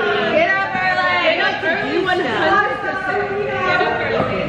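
Chatter: several voices talking over one another.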